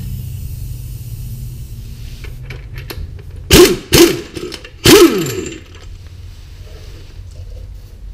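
Craftsman impact wrench hammering on a seized crankshaft pulley bolt in three short bursts about half a second to a second apart, the last one longer and winding down in pitch as the trigger is released.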